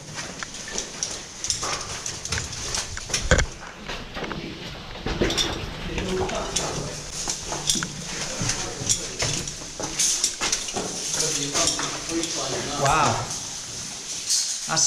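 Boots and gear knocking and scraping on loose rock as people climb over a rubble pile, a run of irregular hard knocks and clicks with the loudest knock about three seconds in, over indistinct murmured voices.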